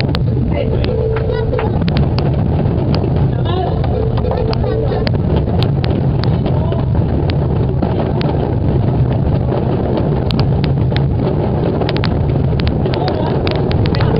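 Massed cajons played by a large crowd: a dense, unbroken rumble of box-drum strokes with sharp slaps scattered through it, and voices mixed in.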